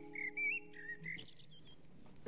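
A songbird singing faintly in short, quick warbling phrases, with a steady held tone under it that stops about a second in.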